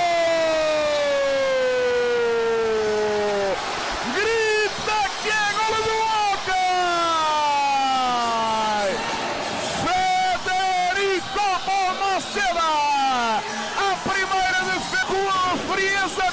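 A commentator's long drawn-out goal shout: one held call falling steadily in pitch for about three and a half seconds, then more long falling calls, then quicker excited shouting.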